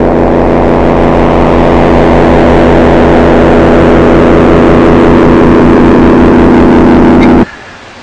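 A loud, sustained droning sound with a fast throbbing low hum beneath it, which swells up at the start and cuts off abruptly near the end.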